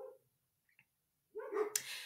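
A dog whining in a quick run of short, faint cries that stops just after the start.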